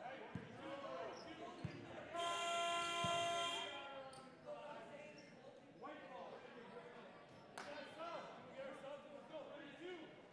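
A gymnasium scoreboard horn sounds once, steady, for about a second and a half, a couple of seconds in. Around it is the chatter of the crowd and players echoing in a large gym.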